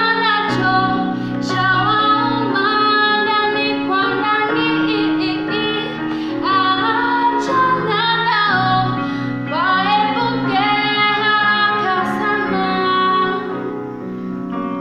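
A woman singing a Swahili song over electronic keyboard accompaniment, the keyboard holding steady chords beneath the melody.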